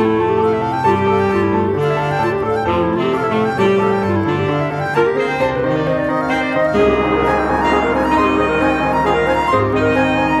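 Chamber ensemble of flute, clarinet, bass clarinet, tenor saxophone, percussion and piano playing a contemporary piece: held, overlapping notes that shift every second or so. About seven seconds in, a low rumble and a rushing wash join the held notes.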